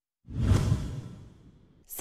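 A broadcast whoosh transition effect, with a deep low end, that swells in after a moment of dead silence and fades away over about a second and a half.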